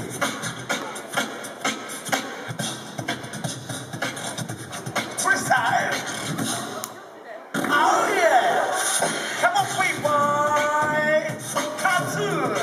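Beatboxing: a fast vocal drum beat of clicks and kicks. It drops out briefly about seven seconds in and comes back louder, with a short run of held tones stepping in pitch about ten seconds in.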